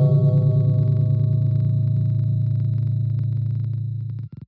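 A deep, ringing gong-like tone, struck just before and slowly fading, with a slight wavering in its sustained note.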